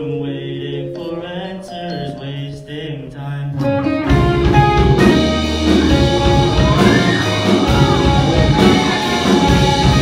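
Live rock band of electric guitars, drum kit and keyboard playing, with a voice singing. It opens softly on held notes, then about four seconds in the drums and the full band come in loud.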